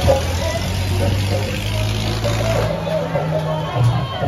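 A machine running with a steady low hum and a hiss over it, amid crowd chatter. The hiss stops nearly three seconds in, and a higher steady tone follows briefly.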